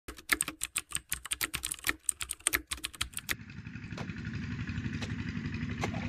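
Rapid, irregular keyboard-typing clicks for about three seconds, then stopping suddenly. A steady low rumble takes over and slowly grows louder.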